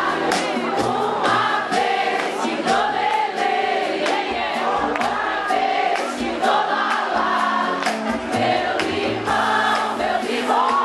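Live band playing an upbeat Brazilian groove with a steady beat and congas, while many voices sing a melody together like a choir.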